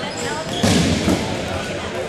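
Rubber dodgeballs bouncing and thudding on a hardwood gym floor, with players' voices echoing around the gym. A louder burst of noise comes a little over half a second in.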